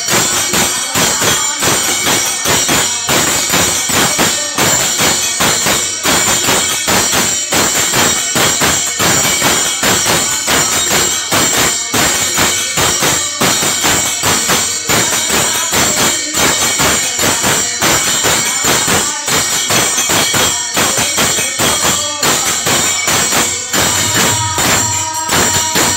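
Devotional bhajan music: small brass hand cymbals (manjira) clashing in a fast, even rhythm over dholak drumming and harmonium.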